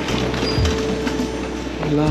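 Background music: held bass notes under a steady tone, with a low thump about half a second in and another near the end.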